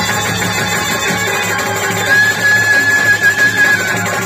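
Folk stage band music led by a clarinet, which holds one long high note from about halfway through over steady low accompaniment.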